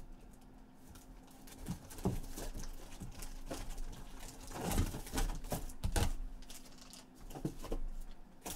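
Irregular taps, clicks and rustles of trading cards and card packs being handled on a table, busiest a little past the middle.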